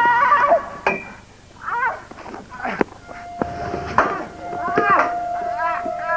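A man's wordless cries and yells of pain, broken by a few sharp knocks. A steady held tone comes in about three seconds in and carries on under the cries.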